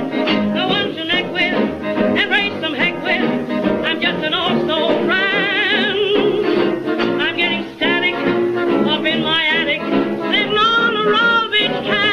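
Old recording of a popular song with a swing-style dance band, brass included, behind a melody line with a strong, wide vibrato. The sound tops out well short of full brightness, like an early record.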